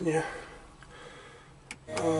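A single sharp click from the car's dashboard radio unit as it is switched over, followed right at the end by the radio starting to play.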